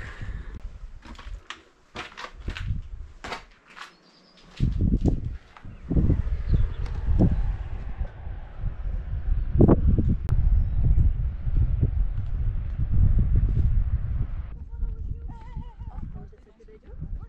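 Footsteps knocking on stony ground, then gusts of wind rumbling on the microphone from about four seconds in, stopping suddenly near the end.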